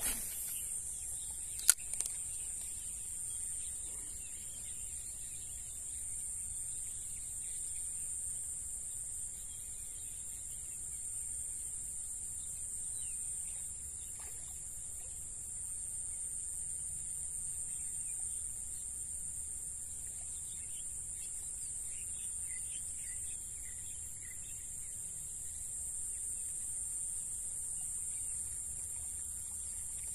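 Steady high-pitched chorus of insects such as crickets, unbroken throughout, with one sharp click about two seconds in and a few faint chirps later on.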